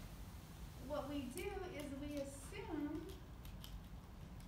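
A voice talking indistinctly from about a second in to past the three-second mark, over a steady low room hum.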